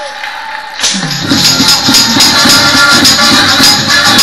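Up-tempo gospel music comes in about a second in, driven by a tambourine jingling in a fast, steady rhythm.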